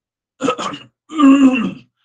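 A man coughing and clearing his throat: a short rough burst about half a second in, then a longer voiced one that falls in pitch.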